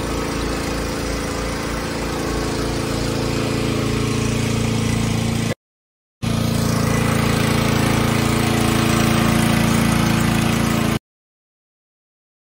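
Mahindra mHawk 140 four-cylinder diesel engine idling steadily, bonnet open, while hooked up for an engine decarbonisation treatment. The sound breaks off briefly about halfway, then resumes and stops about a second before the end.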